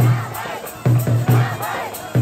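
Large festival drum beaten in short runs of heavy strokes, over a crowd shouting and cheering.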